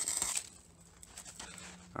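A plastic bowl scooping and scraping up snow: a short crunchy scrape at the start, then fainter scattered crunches and rustles.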